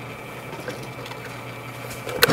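Benchtop drill press running at a steady hum while a small bit bores pilot holes through plywood.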